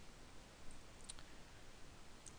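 A couple of faint, sharp computer clicks about a second in, over a low background hiss, as the code editor's suggestion list is worked through.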